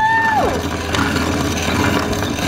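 Vintage wall-mounted hand-crank coffee grinder being cranked, grinding coffee beans with a steady mechanical grinding noise. A brief held vocal "ooh" sounds at the start, falling off about half a second in.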